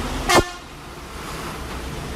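A single short horn toot about a third of a second in, over the steady running of a passing bus and street traffic.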